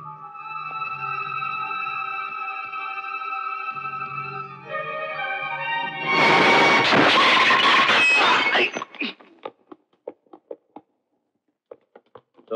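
Dramatic film score of long held notes, then about six seconds in a loud crash lasting two to three seconds as a man falls to the floor, followed by a few scattered clatters that die away.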